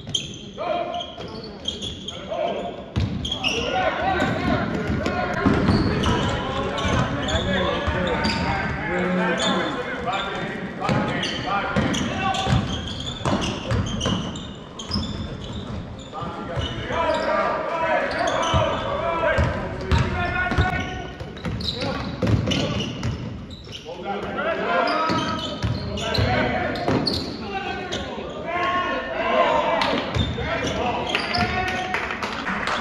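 Indoor basketball game sounds: a ball bouncing on the hardwood floor as players dribble, under a steady mix of indistinct shouting and calling from players and spectators, all echoing in the large gym.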